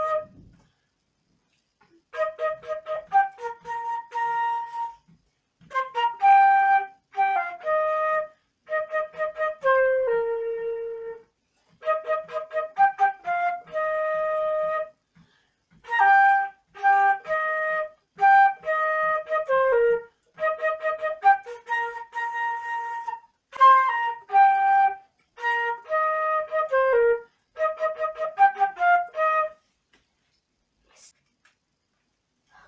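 Solo silver concert flute playing the melody of an African-American spiritual, in phrases of a few seconds with short breaks for breath between them. The playing stops near the end.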